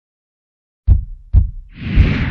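Intro logo sting: two deep low hits about half a second apart, then a rising whoosh that swells into a third hit.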